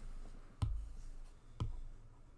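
Two sharp clicks about a second apart from a computer pointing device, made while the drawing on the screen is being erased.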